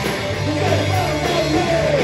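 A punk rock band playing live: distorted electric guitars and electric bass holding a steady low line, with a sung vocal that comes in about half a second in.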